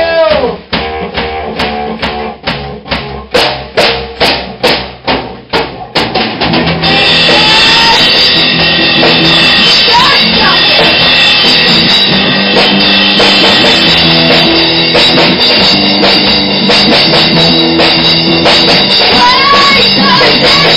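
Punk rock band playing live in a small studio. For the first seven seconds or so the drum kit leads with evenly spaced hits, about two to three a second, over low bass. Then distorted electric guitar and bass come in with the full kit in a loud, dense wall of sound.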